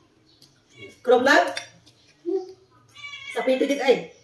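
A woman's voice in short, loud bursts, about a second in and again near the end, with quiet gaps between, over faint clinks of a spoon on a plate.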